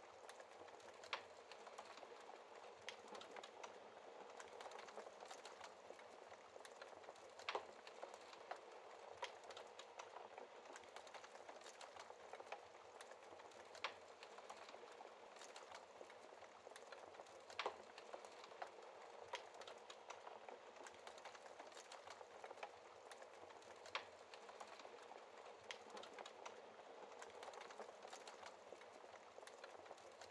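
Fireplace wood fire crackling faintly: a soft steady hiss with sharper pops every few seconds.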